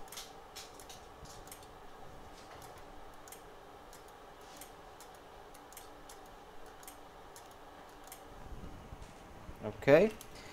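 Quiet workbench room tone: a faint steady hum with scattered light clicks and ticks.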